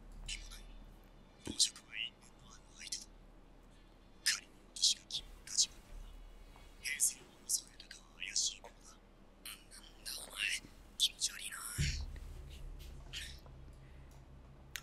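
Faint, whispery dialogue from the anime episode, heard in short breathy snatches. A low steady hum comes in near the end.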